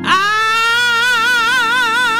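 A woman singing a gospel solo into a microphone, sliding up into one long held note with wide, even vibrato. Soft sustained accompaniment sits beneath her voice.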